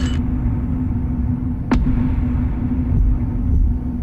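Promo sound design: a deep rumbling drone under a steady held low note, with one sharp hit a little under two seconds in.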